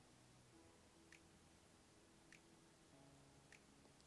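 Near silence: room tone, with three faint soft ticks about a second apart.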